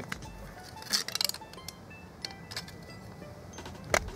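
A metal spoon scraping and clinking in an opened metal ration tin: a quick cluster of clicks about a second in, then a few single clicks, over faint background music.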